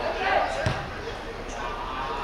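A football kicked once, a single sharp impact about two-thirds of a second in, with players shouting across the pitch.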